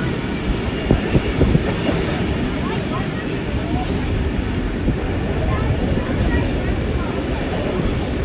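Passenger train running along the track, heard from a carriage window: a steady rumble of wheels on rails, with a few sharp clicks over rail joints about a second in.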